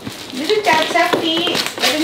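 Women talking, with a hand patting and tapping on the lid of a cardboard box.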